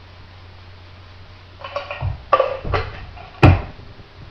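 Stainless steel cocktail shaker being handled: a few metallic knocks and rattles starting about a second and a half in, ending in one sharp, loud clank near the end.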